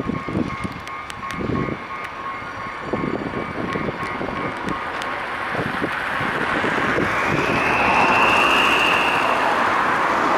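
CSR Mitsubishi electric multiple unit approaching, its running noise over the rails growing steadily louder as it nears. From about two-thirds of the way in, a high whine rises and then holds as the train draws close.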